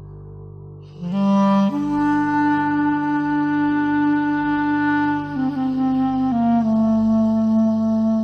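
Solo clarinet entering about a second in, playing slow, long held notes over a steady low drone. The line steps up once, holds, then steps down twice.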